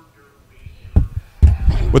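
Short pause with faint background noise, then two low thumps, one about a second in and a longer one soon after, just before a man starts speaking.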